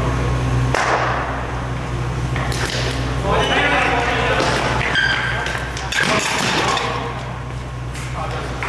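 Cricket bat striking a taped tennis ball about a second in, a sharp knock that rings in a large echoing hall, followed by players shouting while running between the wickets, over a steady low hum.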